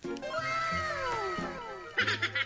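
A cat meowing: one long, drawn-out meow that rises and then falls in pitch.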